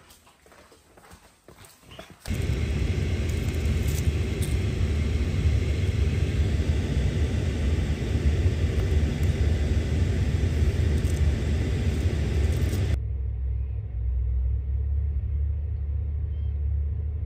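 Steady rain noise with a deep rumble, starting suddenly about two seconds in. Near the end it changes to a low steady rumble inside a car, with the rain muffled outside.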